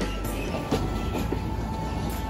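A streetcar running on its rails close by, a steady low rumble with some clatter, under background music.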